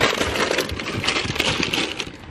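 Aluminium energy-drink cans clinking against one another and knocking into a cardboard box as they are packed by hand: a dense run of small metallic clicks and knocks.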